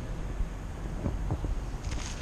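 Low, steady background rumble inside a concrete parking garage, with a few faint clicks.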